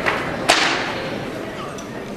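A single sharp crack from a step team's percussive hit about half a second in, its echo trailing off briefly in the gymnasium.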